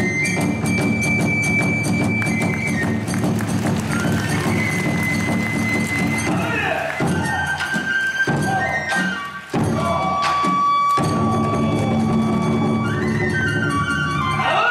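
Live kagura hayashi ensemble accompanying a dance. A transverse bamboo flute plays long held high notes over steady taiko drumming and clashing hand cymbals. The drums drop out for a few seconds past the middle, then come back in.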